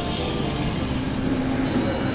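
Steady low rumble of outdoor engine noise, like passing traffic or an aircraft overhead.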